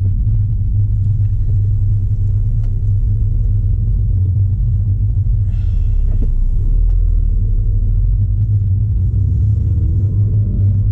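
Steady low rumble of a MINI Cooper S F56 on the move, heard inside the cabin: engine and road noise. A short higher-pitched sound is heard about halfway through.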